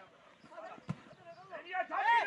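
A football kicked once, a sharp thud about a second in, with shouting voices on the pitch after it.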